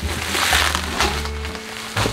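Plastic bubble wrap crinkling as it is pulled out of a cardboard box, mostly in the first second, over background music.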